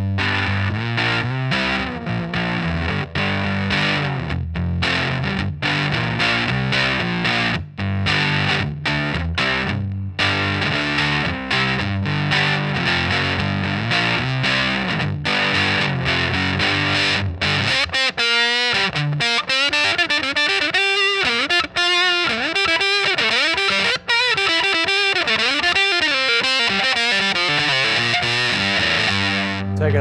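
Electric guitar, a Nash Stratocaster-style on its bridge pickup, played through a Sola Sound Tone Bender Mk IV germanium fuzz pedal with its EQ set in the middle. Low fuzzy chords are chopped rhythmically at first, then about 18 seconds in the playing turns to a single-note lead with bends and vibrato.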